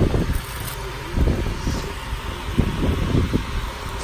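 Cloth rustling and flapping as folded dress fabric is pulled out and shaken open, with irregular soft thumps over a steady background noise.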